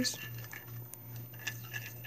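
Faint, scattered light ticks and scrapes of a stirring stick against a bowl as a mixture of glue and black paint is stirred for slime.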